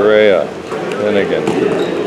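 A basketball bouncing on a gym floor, with sharp impacts about a second and a half in. A voice calls out briefly at the start.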